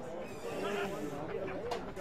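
Several footballers shouting and calling out on the field as they contest the ball, overlapping voices rising and falling in pitch. A short sharp knock comes near the end.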